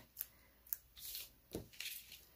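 Faint rustling and a few small clicks of cardstock and a foam adhesive strip being handled and pressed down on a paper card.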